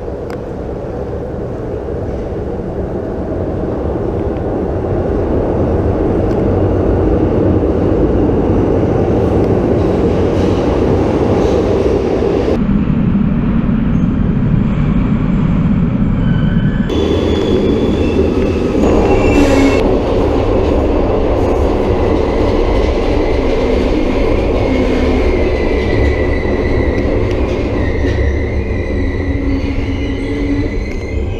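Glasgow Subway train rumbling into the underground station, growing steadily louder over the first several seconds. Later the train is heard running, with a high whine from wheels and motors rising over the rumble in the last part.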